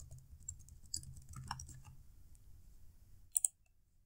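Computer keyboard keys clicking faintly and irregularly as a word is typed, then a couple of sharper clicks near the end.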